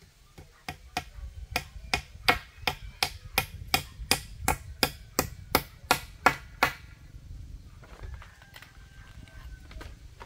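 Hammer blows on the joint of a bamboo crossbar and a wooden post: a run of about twenty quick, sharp strikes, roughly three a second, getting louder, that stops about two-thirds of the way through.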